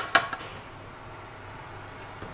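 Metal utensils clink twice in quick succession against a large aluminium cooking pot, with a few lighter taps just after, followed by a low steady hiss.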